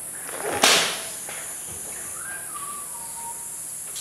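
A single sharp crack about half a second in, rising briefly and then snapping and dying away within half a second: a homemade two-stage coilgun firing.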